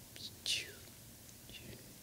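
A person's faint whispered voice: a few soft hissing syllables, the loudest a short falling hiss about half a second in.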